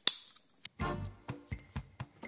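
Opening of a recorded segment theme jingle played on cue: a loud sudden hit at the start that fades out, followed by a run of sharp clicks.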